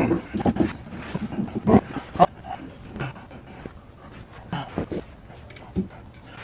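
A heavy Plum Quick Rhino golf cart motor being manhandled onto the differential shaft: scattered metal knocks and clunks, the loudest two about two seconds in, with a man's heavy breathing from the effort.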